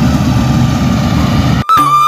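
A combine harvester's engine runs with a steady low rumble as it harvests rice. About a second and a half in, the sound cuts off abruptly and music takes over.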